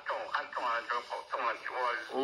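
Speech only: a single voice talking steadily.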